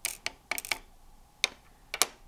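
Small hard plastic toy pieces clicking: a miniature pink plastic cutlery case being opened and its tiny plastic spoon, fork and knife tipped out onto a hard tabletop. About six short, sharp clicks at irregular intervals.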